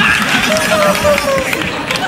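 Men's voices calling out without clear words, with faint crowd noise behind them.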